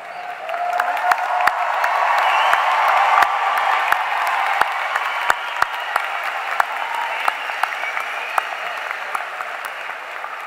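Large crowd applauding in a big hall, building over the first couple of seconds and then slowly dying away. A few sharp, close hand claps stand out above the mass of clapping.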